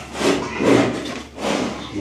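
Indistinct voices talking, in short irregular bursts.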